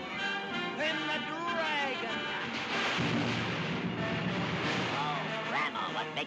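1930s cartoon soundtrack: orchestral music with several swooping, sliding pitch glides, and a loud rushing noise through the middle.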